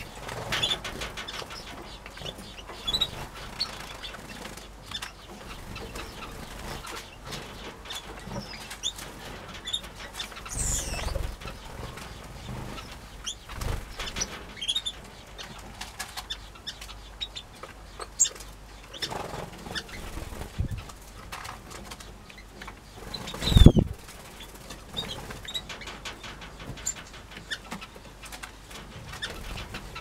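Small aviary finches and canaries giving short, scattered chirps and calls, with wing flutters as birds fly between perches and nest boxes. One much louder sudden burst of wing noise about three-quarters of the way through.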